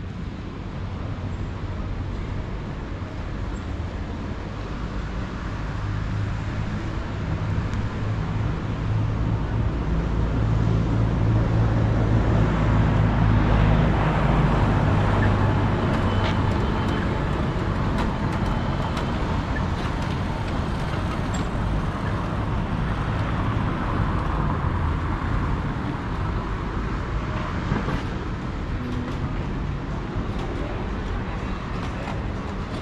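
Road traffic: a vehicle engine rumbling, growing louder over several seconds and then slowly fading, over a steady outdoor traffic hum.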